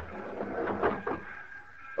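Sound effect of a fist pounding on a wooden railway baggage-car door: several knocks in the first second or so.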